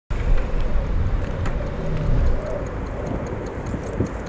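A sport motorcycle's engine idling with a low rumble that eases off after about two and a half seconds. A fast, steady ticking sounds over it, about five ticks a second.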